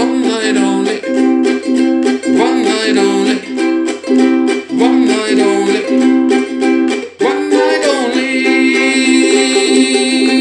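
Ukulele strummed in a steady rhythm, its chords ringing between strokes.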